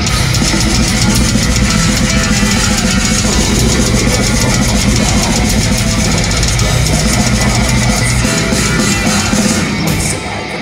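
A progressive metalcore band playing live: heavy distorted electric guitars and a drum kit over bass, loud and unbroken, as heard from the crowd through the venue's PA.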